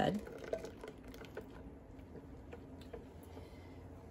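Faint, scattered light taps and clicks of a ladle and whisk against a pot and glass bowl as hot milk mixture is added to eggs being whisked, tempering them.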